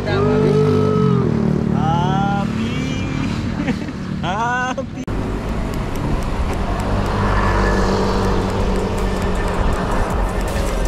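Background music with a gliding vocal line over the first half. About halfway it cuts to steady wind buffeting and road rumble from a bicycle ride on a paved shoulder, with the music still running underneath.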